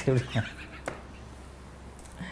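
A man's laughter trailing off in a few short bursts of breath and voice, followed by a single faint click and quiet room tone.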